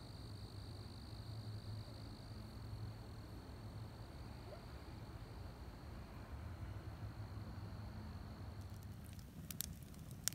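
Crickets trilling faintly and steadily in a high, even tone over a low rumble. Near the end the trill stops and a few sharp crackles of a wood fire begin.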